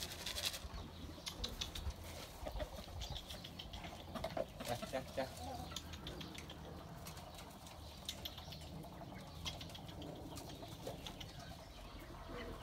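Pigeons flapping their wings in short, scattered bursts, with occasional faint cooing.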